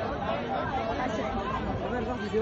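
Spectators' chatter: several people talking at once, with no single voice standing out.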